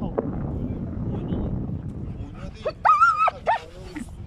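A dog gives a few short, high-pitched whines about three seconds in, over wind rumbling on the microphone. The dog is being held back from a cow it would attack if let go.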